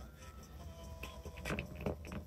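Faint crackling of a cooked crab's claw shell being pulled apart by hand, a couple of small cracks late on over a low hum.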